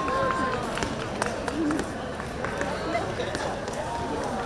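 Open-air crowd ambience: many people talking at a distance, no voice close enough to make out, over steady outdoor background noise, with a brief thin tone just at the start.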